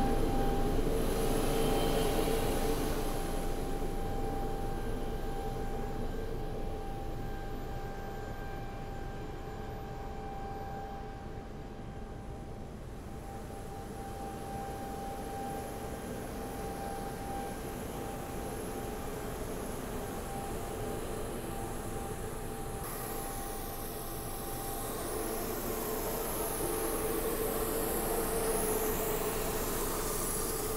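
Airbus A220's auxiliary power unit running, supplying air to the cabin: a steady whine over a constant rush of air. It is louder at the start, fades through the middle and swells again near the end.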